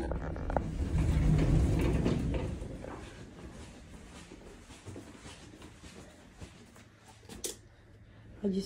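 A door being opened: a couple of clicks, then a low rolling rumble for about two seconds that fades into quiet room tone. There is a single sharp click near the end.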